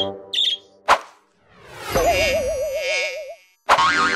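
Cartoon sound effects: two short high chirps, a sharp hit about a second in, then a rising swoop into a long wobbling, warbling tone, and a loud sudden hit with music near the end.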